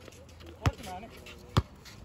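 Basketball being dribbled on a hard outdoor court: sharp single bounces about once a second, with a faint voice between them.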